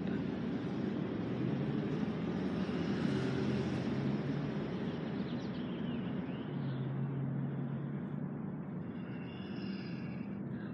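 Steady outdoor background drone of distant motor traffic, with a low engine hum that slowly shifts in pitch.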